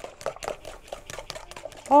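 A spoon beating hurmašica batter of eggs, sugar and oil against the side of a bowl, a quick run of clicks several times a second. The batter is being worked until it turns runny.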